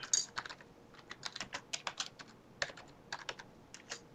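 Typing on a computer keyboard: a quick, irregular run of keystrokes as a short phrase is typed.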